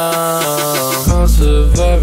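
Music: a rap track with stepping melodic lines, where a deep bass comes in about a second in and the track gets louder.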